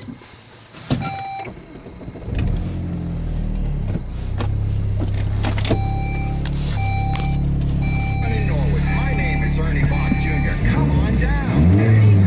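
A 2004 Saab 9-3's turbocharged four-cylinder engine is started with the key. A click and a single chime come about a second in, and the engine catches a little after two seconds and settles into an idle. While it idles a warning chime sounds five times, and near the end the engine is revved up and back down.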